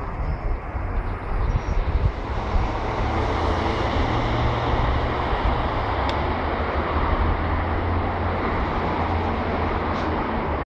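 London Midland class 172 Turbostar diesel multiple unit running as it pulls away along the line: a steady low rumble under a wide hiss.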